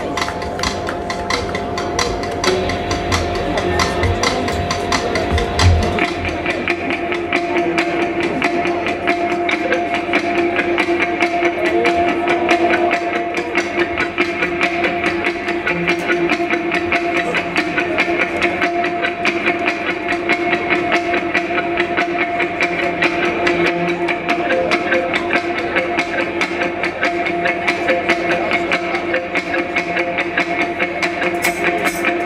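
Live band with electric guitars and drums playing through a PA: held guitar tones sustain over a fast, even ticking pulse. The heavy bass drops out about six seconds in.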